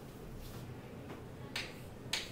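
A single sharp tap of chalk striking a chalkboard about one and a half seconds in, over faint room noise.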